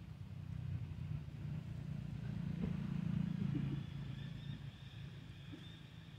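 A motor vehicle's engine passing by, growing louder to a peak about halfway through and then fading away.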